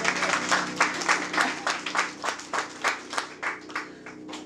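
Hand clapping, a quick even run of about four to five claps a second that grows fainter toward the end, with the last piano notes still ringing faintly underneath.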